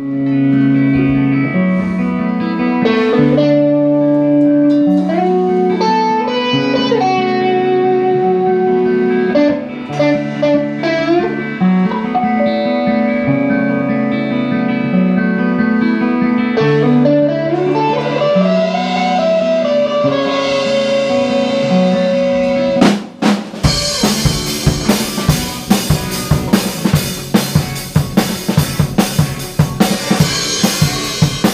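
Rock band playing: electric guitars and bass carry a sustained melodic line, with a guitar note sliding up a little past the middle. About three quarters of the way through, the drum kit comes in with snare and cymbals.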